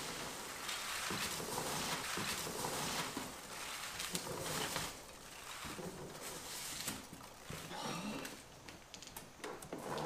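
Foam packing peanuts rustling and squeaking as hands dig through a box full of them, steady for about the first five seconds, then quieter and patchier with scattered light clicks.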